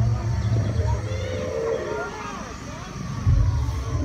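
Low, steady growl from an animatronic dinosaur's loudspeaker, fading out about a second in, with a low thump a little after three seconds, over the chatter of visitors' voices.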